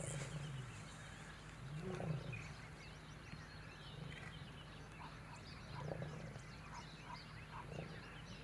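Male lions growling at one another: about four short, low growls a few seconds apart, each rising and falling in pitch.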